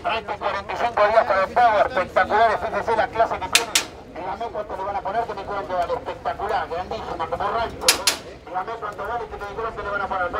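A man's voice talking fast and without pause: a livestock auctioneer calling bids in Spanish.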